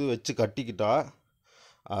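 Speech, a voice narrating in Tamil, broken by a short breath in the pause about a second and a half in.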